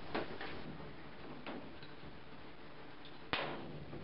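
An HP-2 hand rivet gun working a steel blind rivet into sheet steel: a few light clicks as the handles are squeezed, then one sharp snap a little over three seconds in as the steel mandrel breaks off and the rivet sets.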